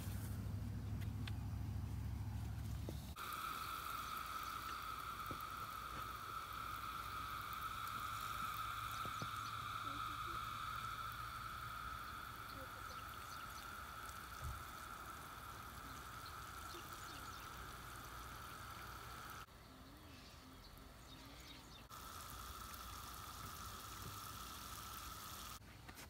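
Faint outdoor evening ambience: a steady, unbroken high-pitched chorus of calling animals in the surrounding fields, cut off abruptly and resumed a few seconds later. It is preceded by a few seconds of low rumble.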